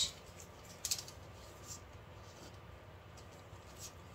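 A baby wipe rubbing over the edge of a silicone mold, with a few faint, brief scuffs.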